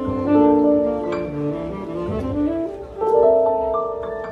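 Tenor saxophone playing long held melody notes with vibrato over piano accompaniment, with a new phrase starting about three seconds in.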